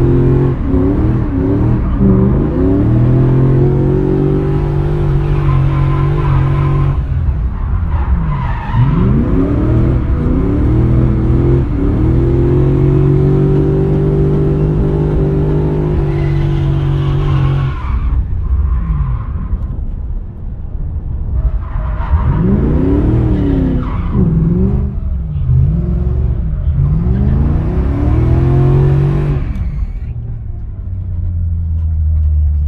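BMW drift car's engine revving hard, heard from inside the cabin: held high for several seconds through each slide, then dropping and climbing again between slides. The rear tyres squeal as they spin.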